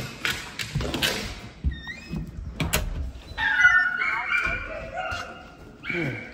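Knocks and thumps for the first three seconds, then from about three seconds in a litter of American bully puppies whining, several high, wavering cries overlapping.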